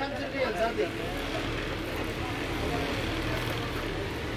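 Shop ambience: faint background voices in the first second, then a steady low hum with an even background hiss.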